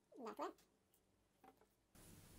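A cat meowing once, short and fairly faint, about a quarter second in, with a fainter brief call about a second later.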